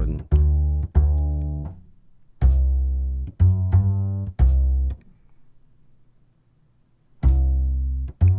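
Sampled acoustic upright bass from UJAM's Virtual Bassist Mellow plugin playing a pattern of plucked notes, with about six notes over the first five seconds. After a pause of about two seconds, a new phrase starts near the end as the next chord is triggered.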